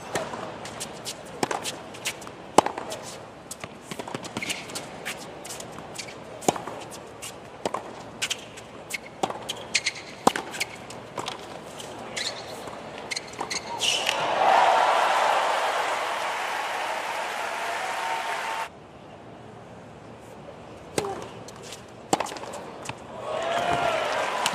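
Tennis rally on a hard court: rackets striking the ball and the ball bouncing, sharp pops every second or so. A little past halfway the stadium crowd applauds and cheers loudly, then the noise cuts off suddenly a few seconds later, and a few more ball bounces follow.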